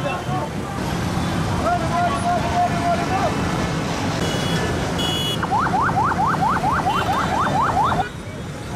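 Motorcycle procession: many motorcycle engines running under crowd voices. About five seconds in, an electronic siren-style vehicle horn starts yelping in quick rising sweeps, about four or five a second, and runs on to the end.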